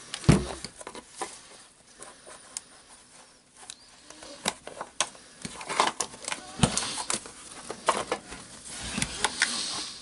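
Hand-handling noise of rotary hammer housing parts being fitted together: scattered clicks, taps and rubbing of the cover against the body, with a sharper knock just after the start and another about two-thirds of the way through.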